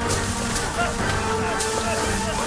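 Film soundtrack: a tense held music drone under faint, indistinct voices, with a couple of sharp hits, one right at the start and one about one and a half seconds in.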